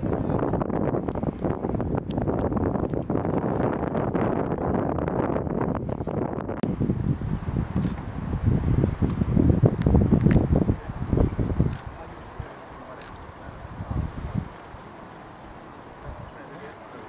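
Wind buffeting the microphone: a loud, low rumble that surges in gusts, then drops away sharply a little before the end, with one last short gust.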